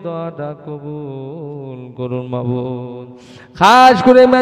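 A man's voice intoning a supplication into a microphone in long, drawn-out melodic phrases, the pitch held and wavering rather than spoken. Near the end it comes in suddenly much louder.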